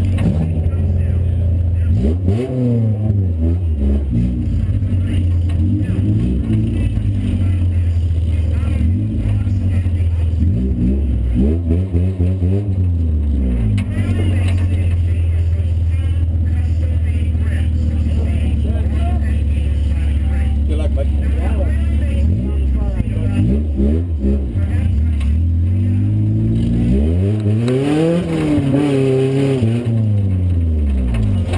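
Honda Civic demo-cross car's small four-cylinder engine heard from inside its stripped cabin, running with a steady low drone and revving up and back down several times as the car moves off.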